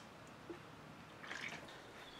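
Near silence: faint room tone, with a soft tick about half a second in and a faint brief hiss a little past halfway.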